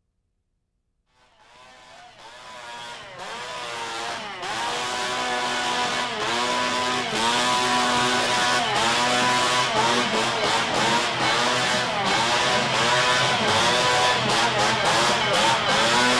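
Small two-stroke engine, typical of Leatherface's chainsaw, revved over and over, its pitch dipping and rising about once a second. It starts about a second in and grows louder over the next several seconds.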